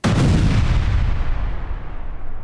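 Heavy artillery blast: one sudden boom with a deep rumble that fades slowly.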